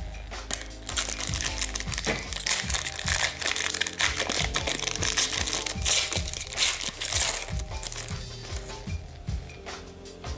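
Foil hockey-card pack wrapper crinkling as it is torn open and the cards are pulled out, a rapid crackle that is loudest in the middle seconds. Quiet background music runs underneath.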